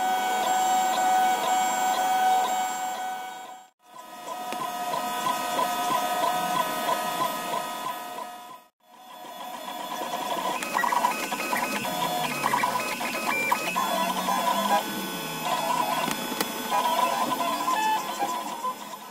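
Large 3D printer's Nema23 stepper motors whining as the print head moves, a set of steady tones that jump and glide in pitch as the moves change speed. The sound drops out briefly twice, about four and nine seconds in.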